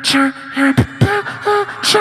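Beatboxing into a handheld microphone: low kick-drum thumps and hissy hi-hat sounds under a hummed line of short repeated notes, the note stepping up in pitch about a second in.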